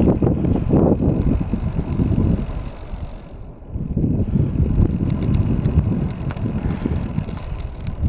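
Wind buffeting the microphone of a camera moving along an asphalt course, a loud uneven rumble that drops away briefly about three seconds in and then returns.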